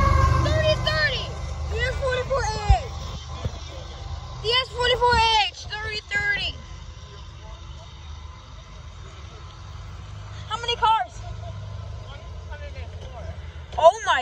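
Freight train's diesel locomotive rolling past close by, its low rumble fading over the first few seconds, with one sharp click a little under three seconds in. Voices call out briefly several times over the rumble.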